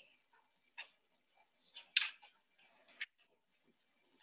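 A few faint, short clicks and rustles about a second apart, the strongest about halfway through and a sharp click near the end, as the phone running the video call is handled.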